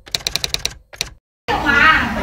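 Typewriter sound effect: a quick, fairly even run of sharp key clicks that stops about a second in.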